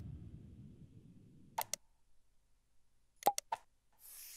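Short mouse-click sound effects: a pair of clicks about one and a half seconds in, then a quick run of three clicks just past three seconds. Under the first clicks, a low sound fades out.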